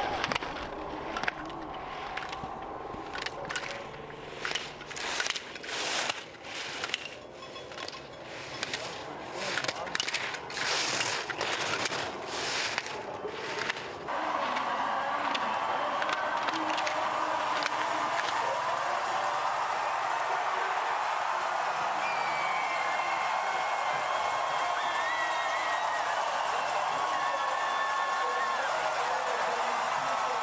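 Slalom skis scraping and carving on hard snow through the turns, heard as a quick, irregular series of hissing scrapes. About halfway through, a crowd's steady cheering comes in suddenly and carries on, with shouts and whistles over it.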